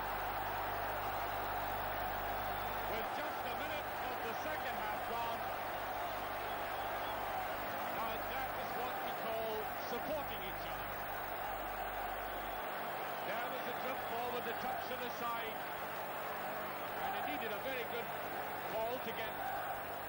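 Large football stadium crowd cheering a goal: a steady, continuous din of many voices from the terraces.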